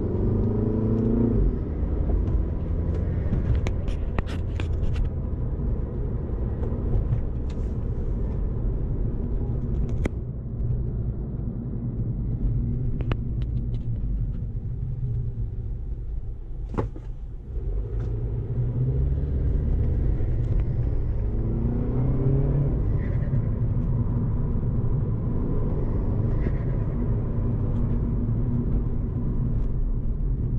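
Mini Cooper S (F56) 2.0-litre turbocharged four-cylinder, fitted with an aFe Magnum Force Stage-2 cold air intake running without its cover, heard from inside the cabin while driving: a steady low rumble whose pitch rises as the car accelerates, once near the start and again about two-thirds of the way through, with a quieter lull a little past halfway. A few faint clicks sound over it.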